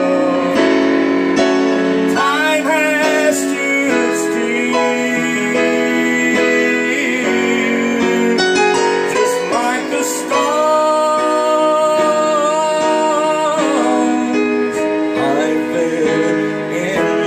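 Slow country song played on a digital piano, held chords with a wavering, sliding melody line over them at times.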